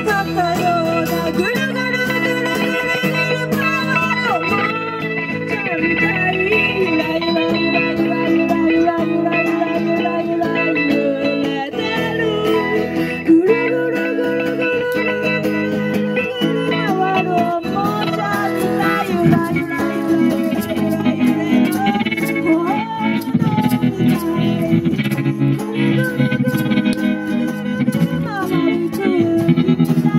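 Live band music played through PA speakers: acoustic and electric guitars playing a song, steady throughout.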